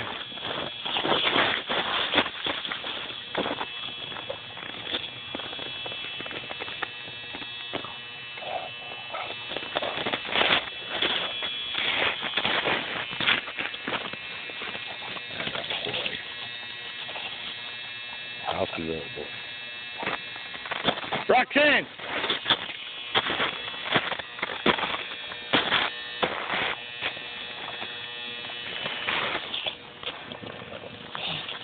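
Footsteps crunching irregularly through snow, with handling knocks, over a steady electrical buzz; a man's voice speaks briefly a little past the middle.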